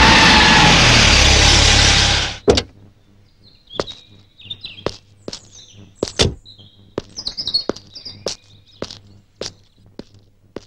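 A police jeep drives in and stops: a loud rush of engine and tyre noise that cuts off about two and a half seconds in. Then birds chirp over a quiet background, with scattered sharp clicks.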